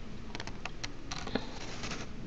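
Computer keyboard typing: a handful of quick, irregular keystrokes, the loudest a little past the middle.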